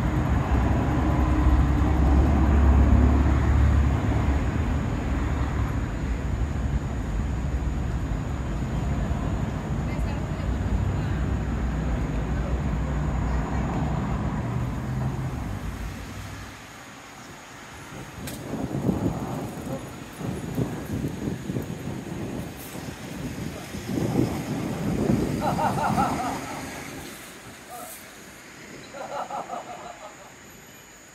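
Street traffic: a heavy vehicle's engine rumbles steadily for about the first sixteen seconds, then drops away abruptly, leaving lighter swells of passing cars.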